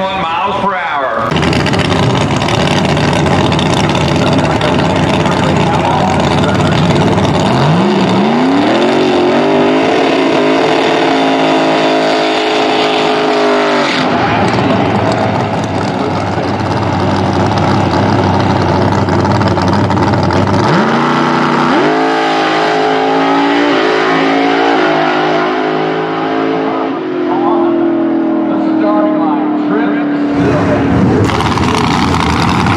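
Pro Outlaw 632 drag-racing door cars, naturally aspirated 632-cubic-inch big-block V8s, running at full throttle on the strip. The engine pitch climbs about eight seconds in and holds until a sudden cut. It climbs again later in steps as the car shifts gears, then falls away near the end.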